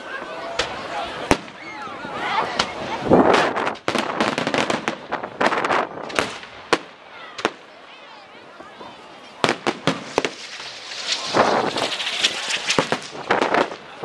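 Aerial fireworks shells bursting in a rapid, irregular series of sharp bangs and crackles. Dense clusters come about three seconds in, around five to six seconds, and again from about eleven to thirteen seconds, with a quieter spell around eight seconds.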